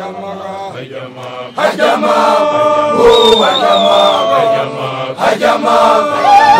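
Basotho initiates (makoloane) chanting a Sesotho initiation song together in many male voices. The group comes in much louder about a second and a half in.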